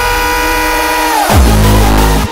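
Hardcore electronic dance music: a sustained synth chord is held, then bends sharply downward about a second and a quarter in and drops into a loud, heavy low bass.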